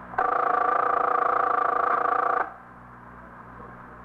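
A held chord of several steady tones, lasting about two seconds, that starts sharply and cuts off abruptly: a music sting between scenes of an old radio drama.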